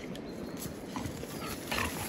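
A dog breathing and moving through long grass as it carries a retrieving dummy back in its mouth, faint, with a brief louder sound near the end.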